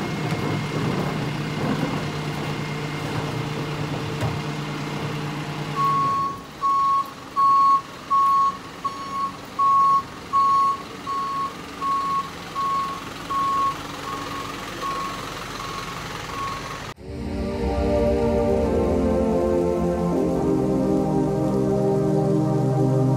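Rear-loader garbage truck running with a steady hum, then its reversing alarm beeping at an even pace, about three beeps every two seconds, for some ten seconds. The sound then cuts abruptly to music.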